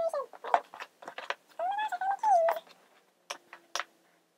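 A pet animal calling: several short pitched cries, then one longer call that rises and falls about two seconds in. A couple of light clicks near the end.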